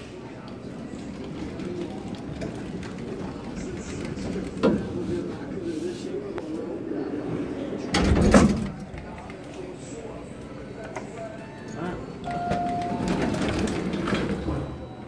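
Indistinct talking inside an elevator cab, with a loud bump about eight seconds in and a short single-tone beep near the end.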